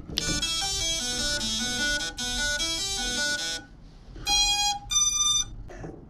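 FPV quadcopter's ESCs playing their start-up tune through the motors as it is powered up. A quick run of stepped beeping notes lasts about three and a half seconds, then two long beeps follow, the second higher.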